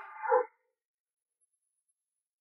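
The last syllable of a man's spoken command ending about half a second in, then dead silence.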